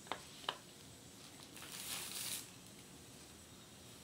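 Two short clicks about half a second apart as porcelain nativity figurines knock together while being handled, then a brief rustle about two seconds in.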